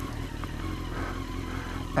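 2002 Honda CBR954RR Fireblade's inline-four engine running at low revs as the bike rolls slowly, a steady low rumble.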